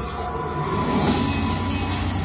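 Cinematic music-video soundtrack played through a TV soundbar: a heavy low rumble and a rushing sound effect over music, the rush swelling about a second in.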